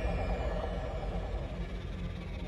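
Deep, steady rumbling drone of cinematic sound design and score with faint held tones above it, slowly fading.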